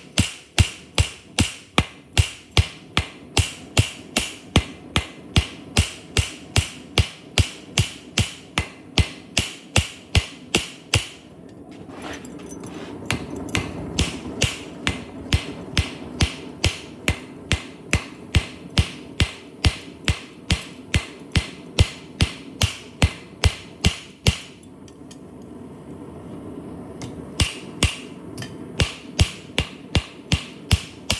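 Hand hammer striking a rebar cross on a steel anvil, forging it, in quick regular blows of about three a second. The blows come in runs with a short break near the middle and a longer one about three-quarters of the way through.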